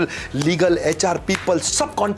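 Speech only: a man talking in short, choppy phrases.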